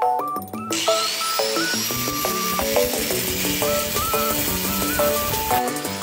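A small cut-off grinder cutting through a rusty motorcycle drive chain. It starts about a second in and stops shortly before the end, with a high whine that rises as it gets going and sinks as it winds down. Background music plays throughout.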